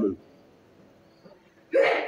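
A man's speech breaks off, leaving faint room tone for about a second and a half, then one short, sharp vocal sound from him near the end.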